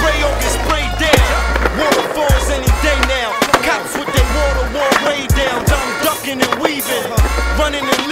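Hip hop music with deep bass notes, mixed with skateboard sounds: wheels rolling on rough pavement and sharp clacks of the board popping and landing.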